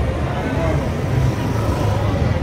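Busy street ambience: a motorbike engine running close by over a steady low rumble, with people talking.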